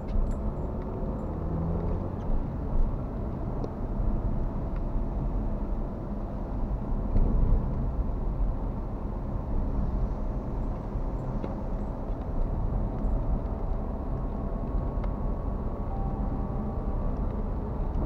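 Steady road noise heard inside a moving car's cabin: the engine running and the tyres rolling on wet asphalt, with a few faint small clicks.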